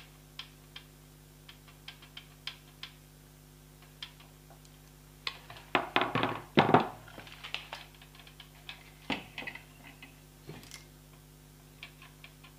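Scattered small clicks and taps of plastic and metal gel blaster parts being handled as the barrel-and-action assembly is moved against the stock, with a louder cluster of knocks about six seconds in. A faint steady hum runs underneath.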